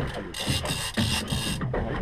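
Fishing reel under load from a heavy fish, giving four quick rasping bursts in about a second as the angler works the bent rod.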